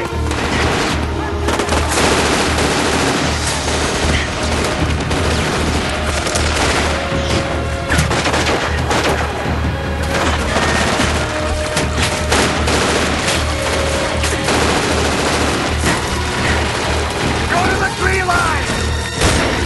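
Sustained gunfire from several guns in a staged film firefight: dense, rapid shots without a break, with a music score underneath.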